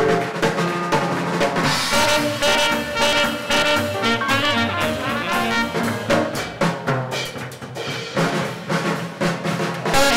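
Swing jazz band music with brass and a drum kit, playing at a driving beat.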